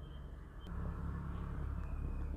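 Quiet, low background rumble that grows a little louder after a faint click about two-thirds of a second in.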